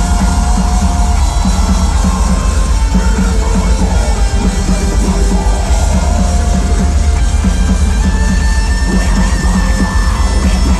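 Melodic death metal band playing live through a festival PA: distorted electric guitars, bass guitar and drum kit together, loud and heavy in the bass.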